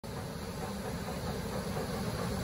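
90-ton V&O OBI mechanical punch press running, its motor and flywheel giving a steady mechanical rumble that slowly grows louder.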